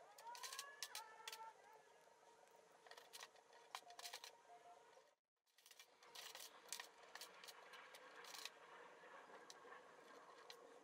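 Faint clicks and scratchy rustles of stiff scrap copper wire being bent by hand and pushed into a graphite crucible, with a faint steady hum underneath. The sound cuts out completely for a moment a little after five seconds in.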